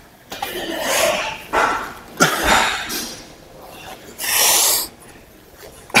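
A man grunting and blowing out hard breaths with the strain of heavy arm curls pushed toward failure, several efforts about a second apart, with the most forceful, hissing exhale about four seconds in.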